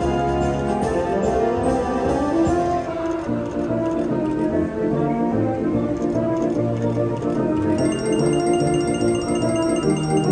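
American Original video slot machine playing its organ-like bonus music through the free-game spins. About 8 seconds in, a quick run of high repeating chimes joins the music as a line win counts up.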